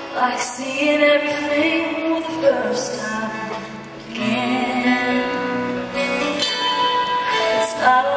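A woman singing a slow song live into a microphone over band accompaniment, holding long notes, with a brief softer passage about halfway through.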